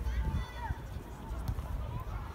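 Children's voices calling out at a distance on a football pitch, with short rising and falling shouts in the first second over a low rumble. A single sharp knock of a ball being kicked comes about one and a half seconds in.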